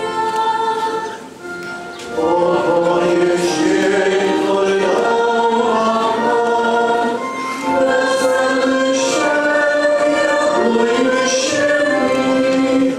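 A church hymn sung by many voices together in slow phrases of held notes. The singing drops away briefly about a second in and comes back fully at about two seconds.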